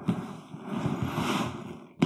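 Rasping and rustling of a rolled-up Darche AD Swag 1100 and its webbing straps being pulled tight. The noise comes in a continuous two-second stretch that starts and stops abruptly.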